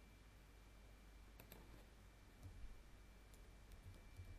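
Faint computer mouse and keyboard clicks in near silence. A couple of clicks come about a second and a half in, then a few light key taps near the end, over a faint steady high tone.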